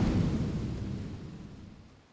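The deep, rumbling tail of a cinematic boom, fading steadily away over two seconds.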